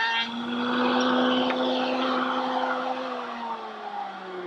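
Router table with a sash-making bit cutting a profile along the edge of a pine rail: a steady motor whine over the noise of the cut. Near the end the whine starts falling in pitch as the router is switched off and spins down.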